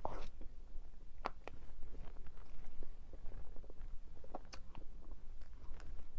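Close-miked mouth sounds of a person eating soft cream cake: scattered small wet clicks and smacks as it is chewed.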